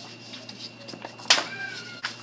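Sheets of paper rustling as they are handled and tossed aside, with one sharp paper swish about a second in. It is followed by a short, thin high-pitched call that dips slightly in pitch.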